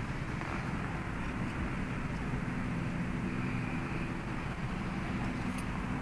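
Steady low background rumble with a faint hum, with no distinct knocks or clicks.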